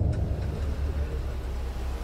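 A steady low rumble, fading slowly, under a faint hiss.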